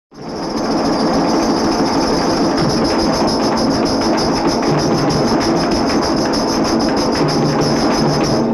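Instrumental opening of an old film song: large hand-held frame drums beaten with sticks in a fast, even rhythm, starting at once and holding a steady tempo, with a bright metallic ring on each stroke.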